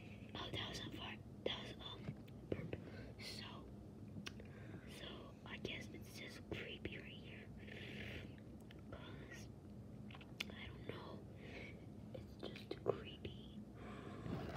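A person whispering in short breathy phrases, with a few faint clicks between them.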